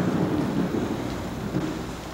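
Outdoor rumble and hiss like wind on the microphone, easing off slightly toward the end.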